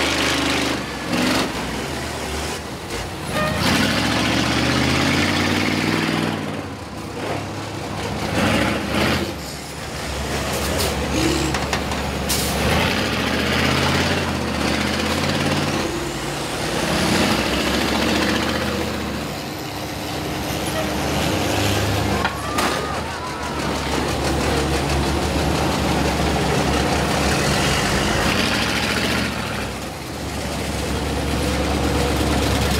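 Several school bus engines revving and running hard as the buses push and ram each other, the engine pitch rising and falling again and again. Sharp bangs of metal impacts come now and then.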